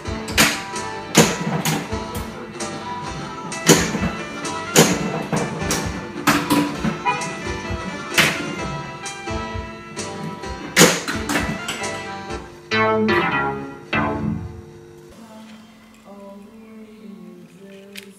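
A rethemed Williams Congo pinball machine in play: its electronic music and sound effects run over repeated sharp knocks of flippers and bumpers striking the ball. The sound dies down about fifteen seconds in.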